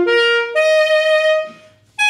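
Buffet Senzo alto saxophone playing unaccompanied: a held note, then a higher held note that fades away about a second and a half in.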